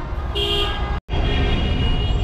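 Car horns honking in busy city traffic over engine and road noise: a short toot about a third of a second in, then, after a sudden gap, a longer held horn.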